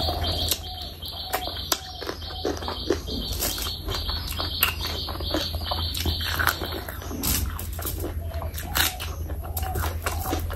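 Close-miked wet chewing and mouth sounds of eating curry and rice by hand: smacking lips and many short, sharp clicks. A steady high hiss runs underneath for most of the first seven seconds.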